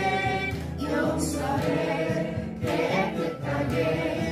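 A Korean Christian praise song sung by several voices with instrumental accompaniment.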